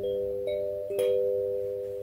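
Kalimba (thumb piano) with metal tines on a wooden body, thumbs plucking a slow melody. Three notes about half a second apart, each ringing on under the next; the third pluck, about a second in, is the loudest.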